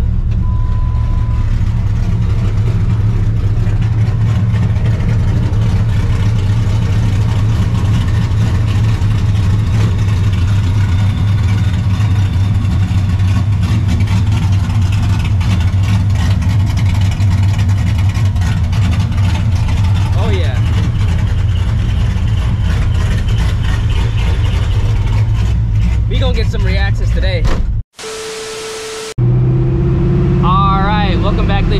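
Cammed, Procharger-supercharged 5.4-litre two-valve V8 of a 1999 Mustang GT idling steadily. Near the end the sound cuts out abruptly for about a second.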